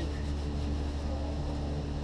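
Steady low hum of a moving gondola lift cabin heard from inside, with a few faint steady tones above it.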